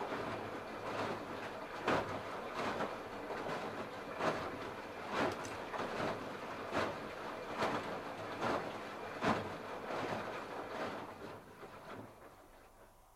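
Candy RapidO front-loading washing machine drum tumbling wet laundry in water: a steady churning with a splash and thud of falling wash roughly every second. The drum starts turning at the start and stops near the end.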